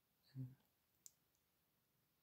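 Near silence: room tone, with a brief faint low vocal sound about a third of a second in and a single faint click about a second in.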